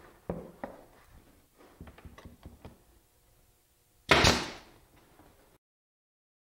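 Pneumatic brad nailer tacking half-inch brads into a wooden ring: two sharp shots in the first second, a run of lighter taps, then one louder bang about four seconds in.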